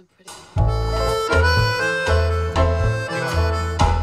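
Music played through a VW ID.4 GTX's upgraded car audio system, with two subwoofers and a bigger subwoofer amplifier, heard in the cabin. It cuts in about half a second in with heavy, deep bass notes under a melodic lead.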